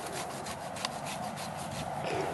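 Hand saw cutting through the trunk of a cut-your-own Christmas tree at its base, in quick back-and-forth strokes, about five a second.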